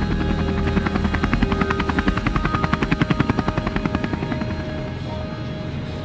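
Medical helicopter running on the ground: fast, even rotor chopping, strongest in the middle and fading near the end, over a steady turbine tone. Background music plays underneath.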